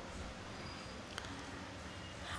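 Faint room tone through the stage microphone between spoken phrases, with a single faint click about a second in.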